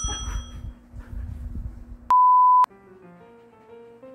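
A steady electronic bleep, half a second long and the loudest sound, comes about two seconds in, after low rustling. Light background music of single sustained notes follows.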